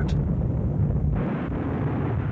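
A low, steady rumble with a faint hiss over it that drops away about a second in, typical of a battle-ambience sound bed.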